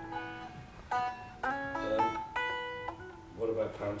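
Semi-hollow electric guitar picked in a slow run of single notes and chord shapes, each note ringing on into the next.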